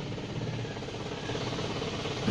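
Isuzu Panther's four-cylinder diesel engine idling steadily with its clatter, heard from inside the cabin. The owner takes its tendency to sag toward stalling at idle for a sign that the Bosch-type injection pump needs calibration.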